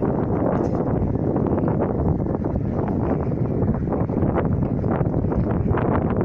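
Wind buffeting the microphone, a steady loud rumble with no breaks, with a few faint ticks in the second half.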